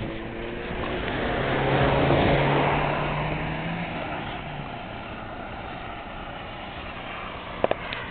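A motor vehicle passing by: its engine and road noise swell to a peak about two seconds in, then fade away. Two sharp clicks near the end.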